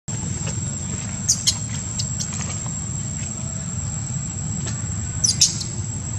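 Outdoor forest ambience: a steady, thin, high-pitched insect whine over a low rumble. Short, sharp high squeaks break in briefly about a second in and again, louder, near the end.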